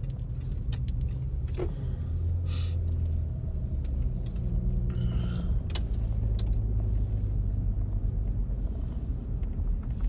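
Car driving slowly, heard from inside the cabin: a steady low engine and road rumble with a few faint clicks and rattles.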